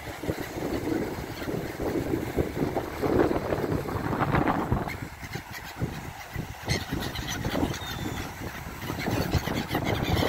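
A flock of gulls calling in scattered short cries around the camera, with wind gusting on the microphone.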